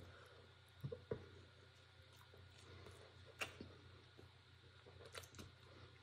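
Near silence with faint chewing of a bite of air-fried pizza, a few soft mouth clicks scattered through it.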